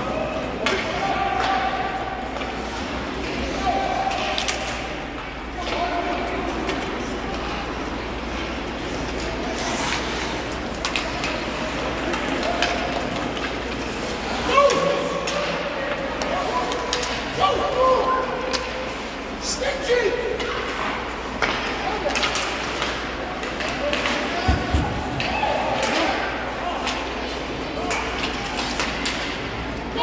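Ice hockey game sound in an arena: spectators' voices calling out and chatting, with sharp knocks of sticks and puck against the ice and boards, the loudest about ten seconds in.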